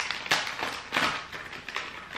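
Plastic food wrapper crinkling in irregular crackles as it is pulled open by hand, with sharper crackles about a third of a second and a second in.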